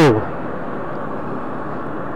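Steady rush of wind and road noise on the microphone of a moving motorcycle, an even hiss-like roar with no distinct engine note standing out.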